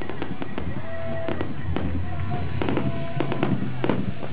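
Aerial fireworks bursting in quick succession: a rapid series of sharp bangs and crackles from the exploding shells. Music plays underneath.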